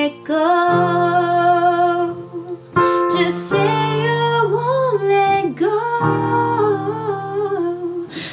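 Pop music: a female voice singing long, held notes that slide between pitches over a keyboard accompaniment.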